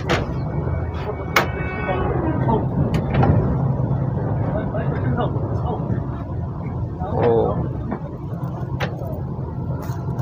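Steady low rumble of the moving Vande Bharat Express heard inside the coach, with a few sharp plastic clicks and knocks as a fold-out tray table is pulled from a seat armrest and swung open.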